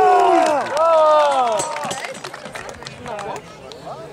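A man's voice shouting long, drawn-out calls of "nie" in the first half, over outdoor crowd chatter. Sharp knocks run throughout, consistent with weapons striking shields in a sparring bout.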